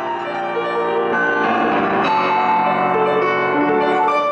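Kawai grand piano played solo: a legato passage of held, overlapping notes and chords.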